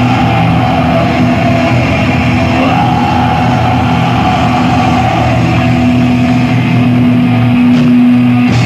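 Loud live black metal: distorted electric guitars and bass hold a long, steady, droning chord.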